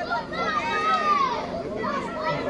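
Crowd of spectators talking and calling out, many voices overlapping.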